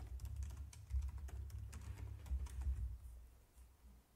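Typing on a computer keyboard: a quick run of irregular keystrokes that stops about three seconds in.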